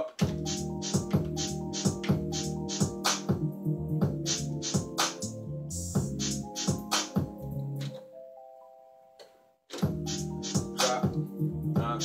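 A programmed beat playing back: drum-machine hits over a synth bass line in E flat with keys and a pad. About eight seconds in, the drums and bass stop and a held chord fades away. The full beat drops back in under two seconds later, a programmed pause in the arrangement.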